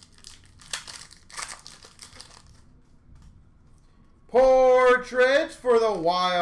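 Crinkling rustles of a trading-card pack wrapper being torn and handled, in several short bursts over the first two seconds or so. A loud, drawn-out voice then starts about four seconds in.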